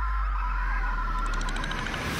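Piercing, warbling electronic siren-like tone over a deep steady drone: a sci-fi sound effect, loud enough that the girl on screen covers her ears.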